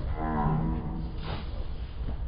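One drawn-out shout from a man, lasting about a second near the start and held on a vowel without clear words.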